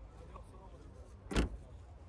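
The trunk lid of a Mercedes-Benz E240 sedan is shut with a single thump about a second and a half in, over a faint steady background hum.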